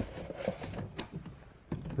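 Cordless screw gun driving a screw to fasten the edge-banding roll holder to a hot air edge bander, quiet, with a sharp click about halfway through.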